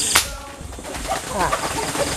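A single sharp air-rifle shot just after the start, aimed at a rooster roosting in a tree, followed about a second later by short rising and falling calls from the startled chicken.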